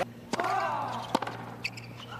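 Tennis ball struck hard by a racket on a serve about a third of a second in, followed at once by a short grunt, then the return strike nearly a second later.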